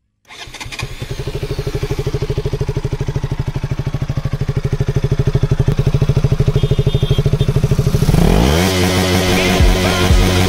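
KTM RC 200's 199.5 cc single-cylinder engine idling with an even, steady pulse. About eight seconds in the throttle is blipped and the pitch rises, and music then comes in over it.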